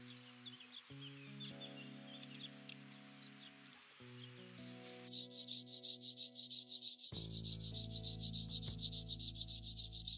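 Soft background music with a few faint bird chirps. About halfway through, fast, even rasping strokes of a hand saw cutting through a wild quince trunk start up loudly over the music.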